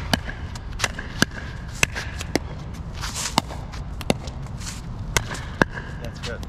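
Pickleball rally: sharp pops of a plastic pickleball being struck by paddles and bouncing on the hard court, about one or two a second and unevenly spaced, over a steady low rumble.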